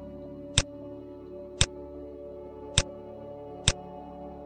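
Computer mouse button clicking four times, about a second apart, as rivets are selected one by one in a CAD program.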